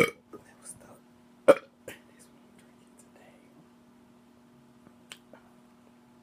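A woman clearing her throat: two short, loud throat-clearing sounds about a second and a half apart, followed by a few faint clicks.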